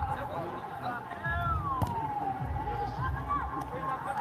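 Distant shouts and chatter of players and spectators around an amateur football pitch. One long call falls in pitch a little after a second in.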